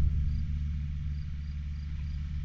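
Steady low engine hum of a van driving slowly across a field, with faint high cricket chirps repeating about twice a second.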